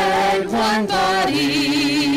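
Voices singing a hymn in long held notes, moving to a new, lower held note a little over a second in.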